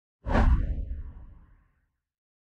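Title-card whoosh sound effect with a deep boom: it hits suddenly about a quarter second in, then the rumble fades out over about a second and a half.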